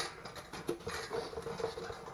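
Hands rummaging in a cardboard box, with irregular light scratching, rustling and small ticks as the bird feeder and its steel cable are handled inside it.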